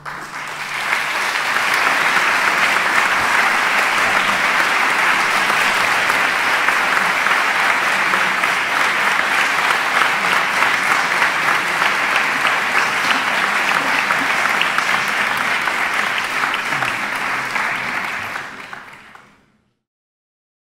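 Concert audience applauding, swelling within the first second or two, holding steady, then fading out near the end.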